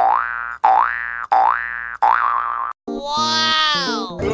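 Cartoon-style comedy sound effect added in editing: four short notes in quick succession, each swooping upward, then a longer note that slides down with a wobble.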